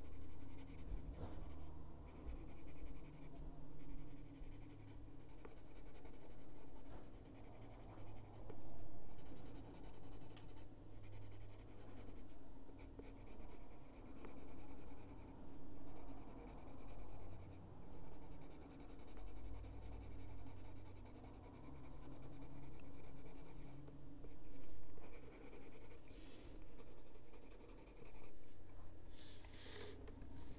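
Caran d'Ache Luminance colored pencil rubbing on paper in repeated back-and-forth shading strokes, with a short rustle of the paper being handled near the end.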